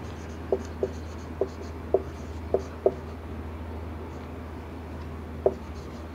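Marker pen writing on a whiteboard, a series of short strokes: six in the first three seconds and one more near the end. A steady low hum runs beneath.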